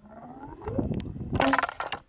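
A homemade vacuum cannon firing: a sliding sound rising in pitch as the piston is drawn down the tube, then a loud, sharp burst as air rushes in and drives the projectile out of the muzzle.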